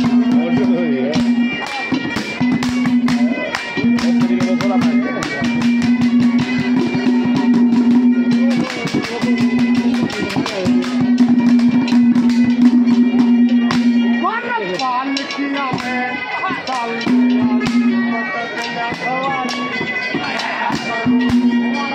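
Live Haryanvi ragni music: a harmonium holds a steady note with short breaks under fast, dense percussion strikes, and a man's singing voice comes in near the start and again from about three-quarters of the way through.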